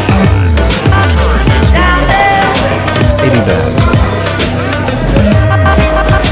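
Live reggae band playing an instrumental passage: a bowed violin carries long, sliding melody notes over electric bass guitar and drums.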